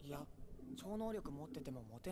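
Quiet dialogue from an anime episode: a young male character speaking Japanese.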